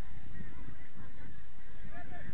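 Wind buffeting an outdoor camera microphone with an irregular low rumble, and many short, high rising-and-falling calls running over it.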